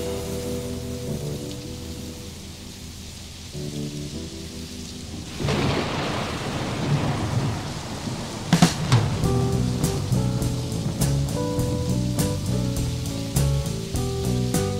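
Thunder and rain sound effects in a slow rock song, over sparse electric piano notes. The rain swells up about five seconds in, and a sharp thunderclap comes a few seconds later.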